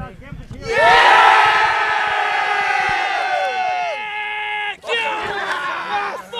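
A football team's players shouting and cheering together in celebration of a cup win: one long joint shout starting about a second in, breaking off near the five-second mark, then a second round of shouts.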